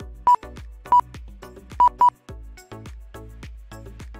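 Background music with a steady beat, over which a lap-timing system gives four short, sharp single-pitch beeps, the last two close together. Each beep marks a Mini-Z RC car crossing the timing line to finish a lap.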